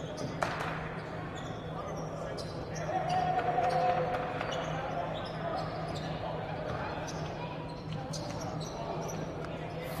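Basketball dribbled on a hardwood gym floor during live play, with short sharp bounces and shoe sounds among players' and spectators' voices in an echoing gym. A low steady hum runs underneath, and the voices rise for a moment about three seconds in.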